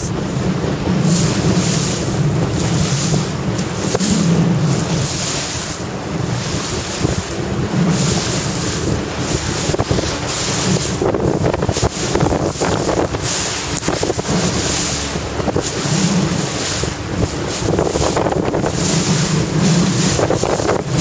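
Strong 25–30 knot wind buffeting the microphone in repeated gusts, over rough, whitecapped water rushing and splashing.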